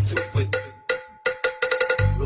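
Electronic Khmer dance remix in a break: after two bass kicks the bass drops out and a cowbell-like percussion sound plays on alone, its hits quickening into a fast roll near the end as a build-up.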